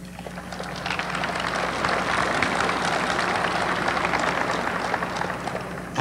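Audience applauding, swelling over the first second or two, then holding steady until it fades just before the end.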